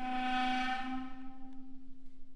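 A contemporary chamber ensemble holding long sustained notes: a breathy, airy tone at one steady pitch fades away over the second half, while a lower note holds steady underneath.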